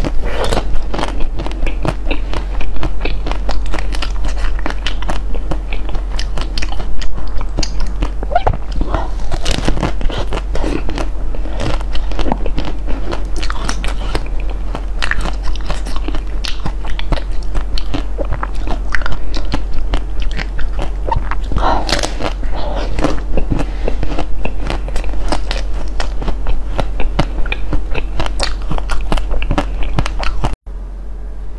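Close-miked biting and chewing of a firm green food, dense with sharp crackles of crunching.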